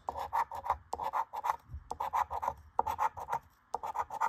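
A coin scratching the coating off a scratch-off lottery ticket in quick, repeated short strokes.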